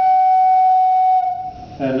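Small wooden organ pipe blown by mouth with ordinary air, sounding one steady, unwavering note that stops a little over a second in. This is the pipe's reference pitch on air.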